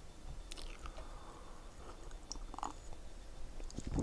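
Quiet room tone with a few faint, small, scattered clicks.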